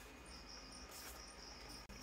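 Faint high-pitched chirring in the background, with a brief rustle of the cardboard box being handled about a second in.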